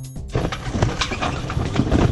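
Wind on the microphone and sea noise aboard a sailboat under way, starting about a third of a second in, with irregular knocks and flaps from the sail and rigging as the mainsail comes down.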